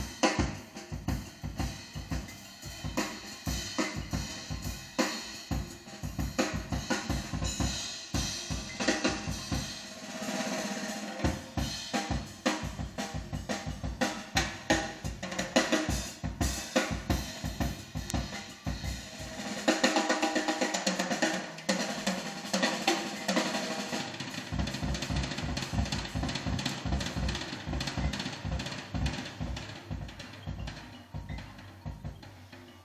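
Recorded jazz with the drum kit to the fore (snare, bass drum and cymbals), played through a pair of vintage JBL 4311 studio monitor loudspeakers and heard in the room. The drumming grows busier and brighter about two-thirds of the way in.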